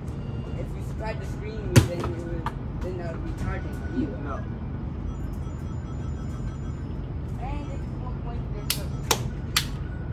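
A basketball bouncing on the pavement: one loud thud about two seconds in, and three sharper bounces close together near the end, over a steady low rumble.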